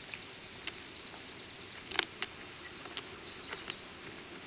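A bird calling with a thin, high, wavering note in the second half, over faint outdoor hiss and a few scattered sharp clicks, the loudest about halfway through.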